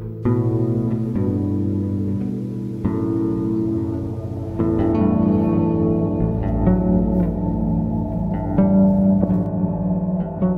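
Background music with plucked guitar, getting fuller about halfway through as a deep bass comes in.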